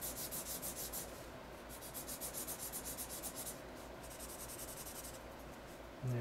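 Green felt-tip marker rubbing on paper in rapid back-and-forth colouring strokes, in three runs with two short pauses.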